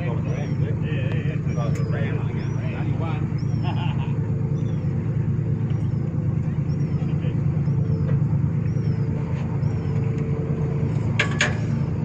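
Boat engine running steadily, under a faint high chirp that repeats about every two-thirds of a second. Brief voices come through in the first few seconds.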